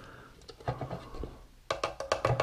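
Plastic measuring cup scraping and tapping against the bread machine's pan as flour is tipped and pressed in: a run of small scratches and clicks, with a quick burst of clicks near the end.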